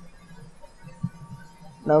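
Steady low hum with one sharp click about halfway through, a computer mouse click on the browser's reload button. A man's voice starts at the very end.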